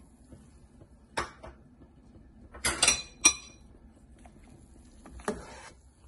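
Kitchenware clinking and knocking: one sharp knock about a second in, a quick run of three or four ringing clinks about halfway through, and a duller knock near the end.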